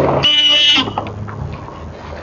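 Car horn honked once, a single short beep of about half a second starting a quarter second in, over a low steady hum.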